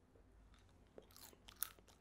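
Faint chewing and mouth clicks from eating a piece of dried fish, a few soft clicks in the second half.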